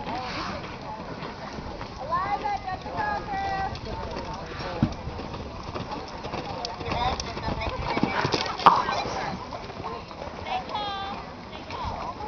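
Hoofbeats of a horse cantering on sand arena footing, with people's voices talking in the background.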